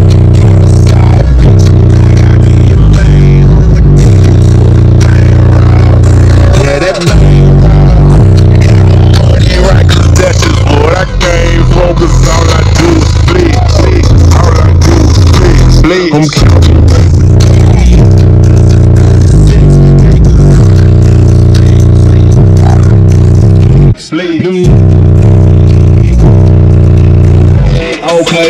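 Bass-heavy music played at extreme volume through a car audio system of two 15-inch Tantric Sounds SHD subwoofers in a ported octoport box, driven by two Crossfire XS-8K amplifiers. The deep bass is constant and maxes out the recording, with a few brief breaks.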